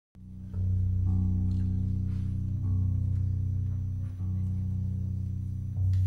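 Double bass playing a slow line of long, held low notes, a new note about every one and a half seconds.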